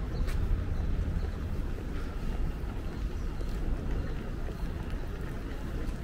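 City street ambience: a steady low rumble of distant traffic and wind on the microphone, with a few faint ticks.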